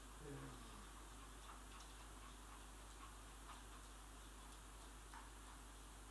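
Near silence with faint, irregular light clicks: a Shih Tzu puppy's claws on a laminate floor as she walks. A brief low voice-like sound falling in pitch comes right at the start.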